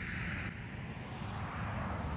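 A car driving past: a steady rush of tyre and engine noise that spreads a little lower in pitch as it goes by.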